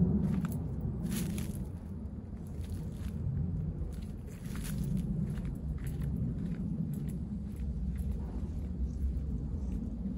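Steady low rumble of wind on the microphone, with footsteps on dry dirt and a few short clicks over it.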